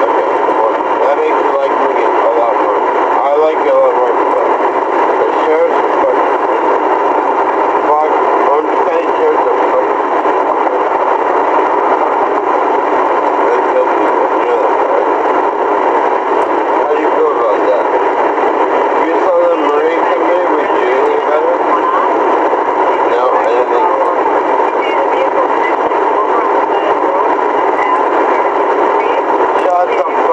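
Steady, loud hiss from a police car's back-seat camera recording, with faint, unintelligible speech underneath.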